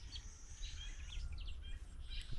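Outdoor rural ambience: a few short, faint bird chirps scattered over a steady low rumble.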